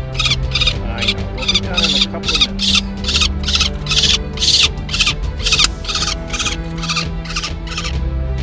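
Peregrine falcon nestling screaming harshly and repeatedly, about three calls a second, as it is held for leg banding; the calls stop just before the end. Soft background music runs underneath.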